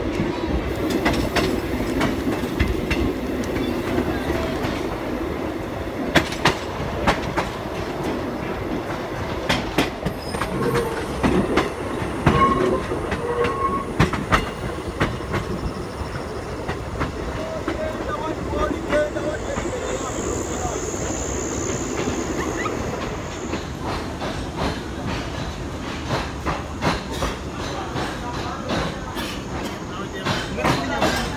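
Passenger train running, heard from on board: a steady rumble with scattered clicks of the wheels over the rails. A high-pitched squeal holds for about three seconds past the middle, and a quick, regular run of clicks follows near the end.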